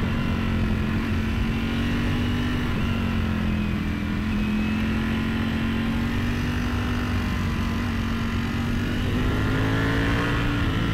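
Ducati Panigale V4S's 1103 cc V4 engine pulling steadily in second gear, heard from the rider's position. Its pitch sags slightly about four seconds in and climbs near the end as the bike picks up speed.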